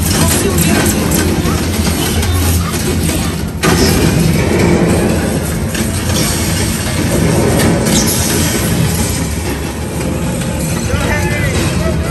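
Interactive dark ride's soundtrack playing loud through the vehicle: a dense mix of sound effects and music over a steady low rumble, with voices in it. It breaks off and jumps back in abruptly about three and a half seconds in.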